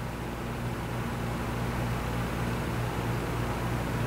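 Steady room background noise: a low hum under an even hiss, with no distinct event.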